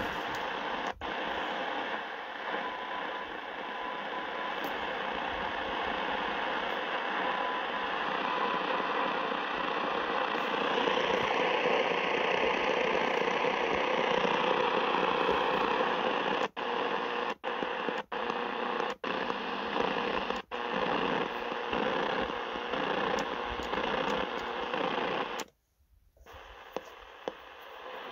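Sony ICF-SW7600G receiver on the longwave band giving a steady hiss of static and interference with no station voice, a faint whistle in the first third. Several short cut-outs come in the second half, and a brief near-silent gap near the end, while the set is retuned from 270 to 151 kHz.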